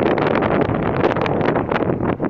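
Wind buffeting the microphone: a loud, gusty rush without speech.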